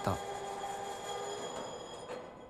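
Electric point machine throwing the switch blades of a subway turnout: a steady motor whine over hiss that slowly fades through the two seconds.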